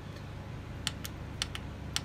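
Front-panel push buttons on a WEEWORLD KM1000ii karaoke amplifier clicking as they are pressed: two quick double clicks and then one more click, stepping through its three-level anti-feedback setting.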